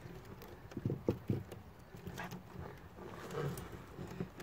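Chicken wire being wrapped and squeezed around a glass garden-light globe, with soft rustling of the wire and a few short knocks against the wooden table about a second in.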